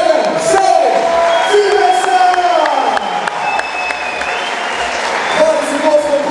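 A man's voice over a hall PA, drawing out his words as the winner's arm is raised, with the crowd applauding and scattered claps underneath.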